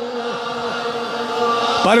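A man's long chanted note fading away, with the same falling pattern repeating about three times a second like echoes. His voice comes back in near the end.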